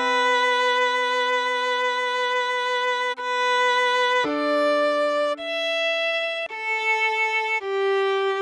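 Violin playing a simple melody slowly, one note at a time: a long held note for about four seconds, then a few shorter notes about a second each.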